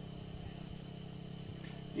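Faint, steady low mechanical hum with a few held tones.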